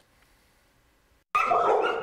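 Near silence, then a little over a second in, dogs in shelter kennels break into loud barking.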